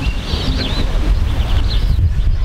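Birds chirping and twittering, over a steady low wind rumble on the microphone.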